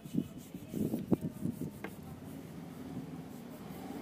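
Fingers rubbing and pressing a vinyl rim-strip sticker down onto a motorcycle's rear wheel rim: a scuffing, rubbing sound with a few small clicks in the first two seconds, then fainter.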